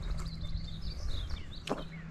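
Faint bird chirps over outdoor background noise, with a low rumble and a steady low hum underneath.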